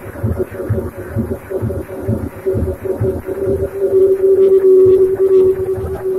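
Live techno played on hardware drum machines and synthesizers: a steady, regular kick-drum pulse under a held synth note that swells to its loudest about four seconds in, then eases back slightly near the end.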